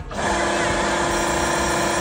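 Drop tower ride's machinery starting up: a steady mechanical hum with a whine that begins abruptly just after the start and holds level.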